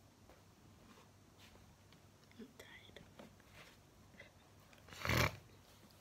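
Faint handling sounds of a plastic glue bottle being opened, with small clicks and a faint murmur, then one short, sharp burst of noise about five seconds in.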